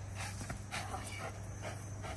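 Protection dog panting faintly while holding a bite grip on a decoy's padded leg.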